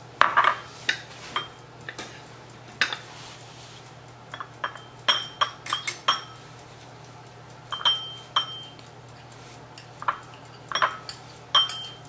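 Glass coddling cups knocking and clinking against a small ceramic bowl as coddled eggs are tipped and scraped out: irregular clinks and knocks, several followed by a brief ringing ping, the loudest in the first second or so.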